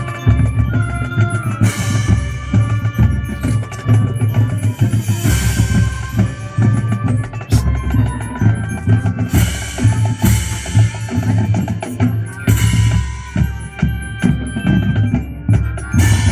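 Marching band playing live: held wind and brass chords over a drumline and pit percussion, with a heavy bass-drum pulse. Several loud cymbal crashes come through, about two, five and twelve seconds in.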